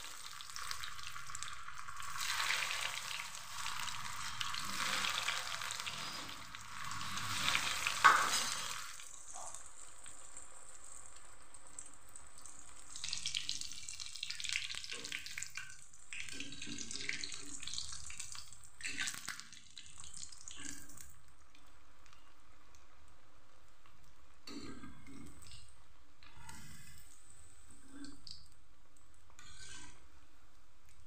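Potato-stuffed bread roll deep-frying in hot oil in an iron kadhai: loud sizzling for the first eight seconds or so as the freshly dropped roll hits the oil, with a sharp knock near the end of that stretch. After that the frying goes on more quietly, broken by short scrapes and taps of a slotted spoon in the pan.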